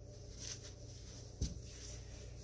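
Quiet handling of a fabric-wrapped plastic bottle being stuffed with polyester fiberfill: faint rustles and one soft bump about one and a half seconds in, over a low steady hum.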